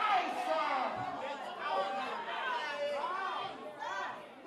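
Several voices of a congregation calling out and talking over one another in excited reaction, in a large hall.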